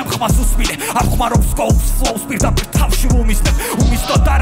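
A rapper rapping fast in Georgian over a hip-hop beat with heavy bass kicks and crisp hi-hat ticks.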